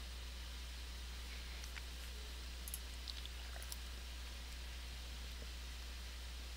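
Quiet room tone: a steady low electrical hum and hiss, with a few faint clicks about two to four seconds in.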